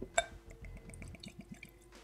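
Whiskey poured from a glass bottle into a small tasting glass: a sharp click near the start, then a quick run of small glugs and drips that fades out shortly before the end.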